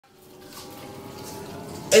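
Faint, steady background sound fading up from silence, with a voice starting loudly near the end.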